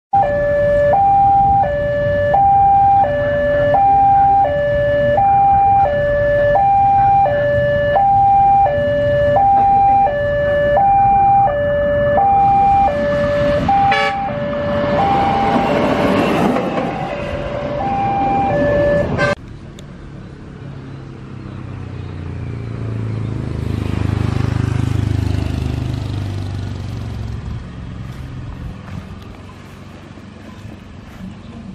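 Railway level-crossing electronic warning alarm sounding a steady two-tone high-low pattern, each tone lasting about two-thirds of a second, while a rail vehicle runs past with rising track noise in the middle. The alarm cuts off suddenly after about nineteen seconds, giving way to the low rumble of a rail vehicle passing.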